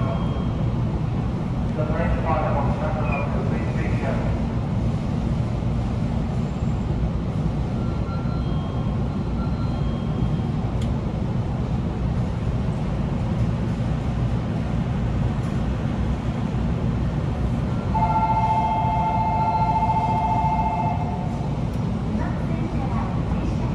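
Steady low rumble of an electric commuter train standing at a station platform, with a brief voice announcement about two seconds in. Near the end a steady two-note electronic tone sounds for about three seconds.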